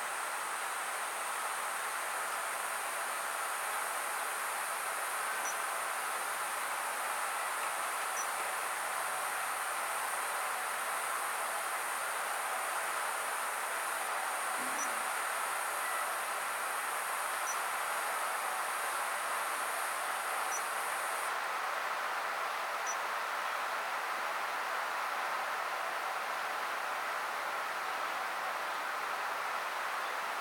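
Steady background hiss with a thin, high buzz over it that cuts off about two-thirds of the way through, and a few faint high ticks.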